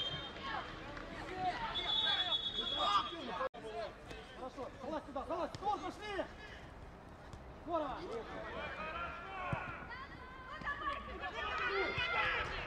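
Indistinct shouting of players and coaches across an outdoor football pitch, with a referee's whistle blown once for about a second, about two seconds in. The sound breaks off for a moment at an edit shortly after.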